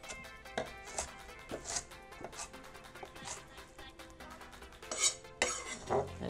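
A chef's knife slicing red cabbage on a wooden cutting board: short sharp cuts, about two a second, a little louder near the end, over background music.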